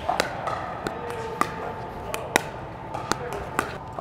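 Plastic pickleball dinked back and forth: a series of short, sharp pops from paddles striking the ball and the ball bouncing on the court, about six, irregularly spaced.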